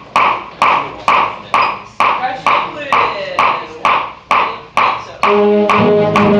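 A steady count-off beat of sharp pulses, about two a second, each dying away quickly. About five seconds in, the band's wind instruments come in together on a held chord.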